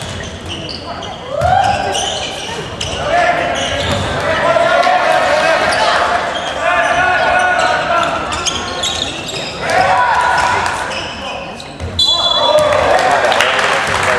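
Basketball dribbled on a hardwood gym floor, with a crowd chanting in long held calls that echo in the hall. A short shrill whistle blast comes about twelve seconds in, typical of a referee stopping play.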